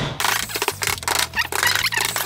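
Rapid scratching and scraping against a plasterboard sheet by a hand tool, over quiet background music.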